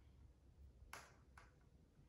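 Near silence with two faint light taps, about a second in and again half a second later: thin bamboo sticks being set down against a wooden tabletop.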